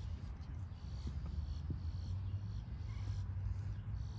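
Steady low wind rumble on the microphone, with faint high-pitched animal chirps repeating about once or twice a second.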